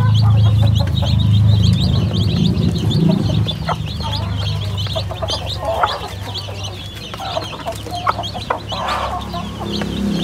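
A brood of young chicks peeping constantly in rapid short high chirps, with their mother hen clucking low among them while they feed. Now and then a sharp tick of beaks pecking at the plastic feeder tray.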